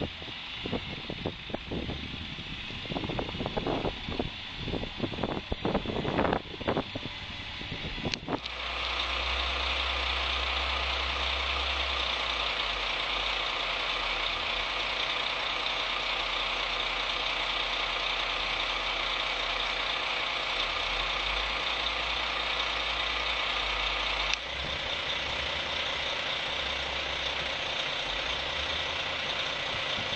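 Renault Kerax truck's diesel engine idling steadily close by, setting in abruptly about eight seconds in with a constant low hum. Before that, irregular knocks and bumps.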